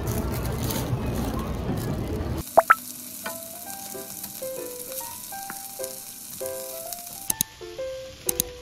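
A couple of seconds of loud, noisy ambience, then a sudden cut to chicken thighs sizzling in olive oil in a frying pan, under background music of single stepping notes. There are a few sharp clicks, two close together just after the cut and one near the end.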